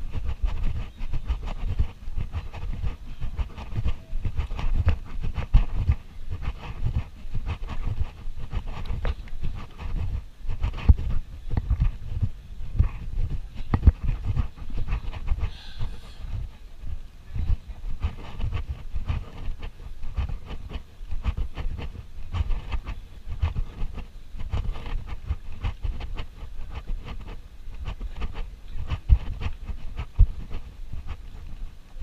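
Wind buffeting a GoPro Hero 4 Black action camera's microphone while walking: an uneven low rumble running throughout, with many small irregular knocks.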